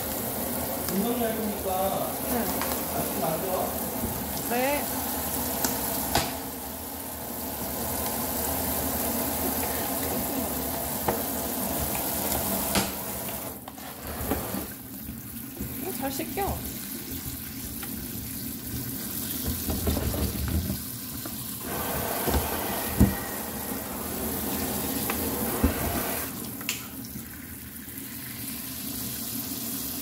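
Kitchen tap running into a stainless steel sink while cherry tomatoes are rinsed in their clear plastic clamshell under the stream, the water splashing off the box and fruit. A few sharp clicks and knocks from the plastic container being handled.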